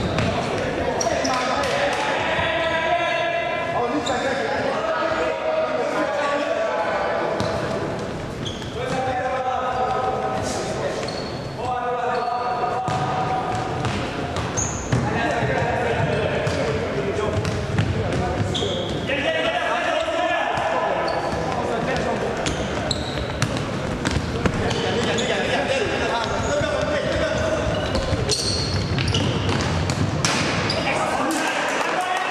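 Indoor futsal game in a reverberant sports hall: voices calling and shouting across the court, with the ball thudding off feet and bouncing on the wooden floor again and again.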